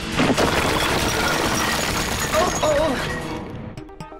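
Cartoon action soundtrack: music under a dense, noisy wash of sound effects, with a brief vocal sound about two and a half seconds in. It all fades away near the end.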